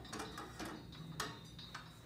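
A few sharp metallic clicks and light rattles as a solar panel's mounting bracket is jiggled onto the mount of a sun-tracker stand.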